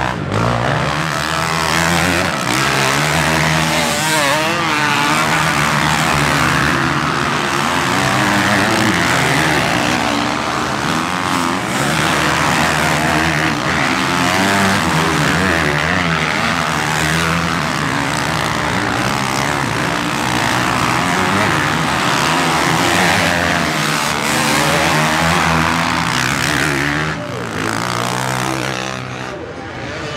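Several motocross bikes racing, their engines revving up and down as they pass one after another. The sound dips briefly near the end.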